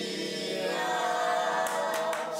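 Mixed choir of male and female voices singing together, holding a long sustained note.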